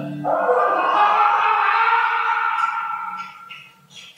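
A loud, drawn-out sound from a promotional film's soundtrack, played over a venue's speakers. It starts suddenly just after the music stops, holds for about three seconds and then fades away.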